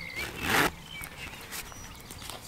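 A YKK zip on a waxed-canvas pouch being pulled open, one short rasp about half a second in, followed by quieter handling of the fabric.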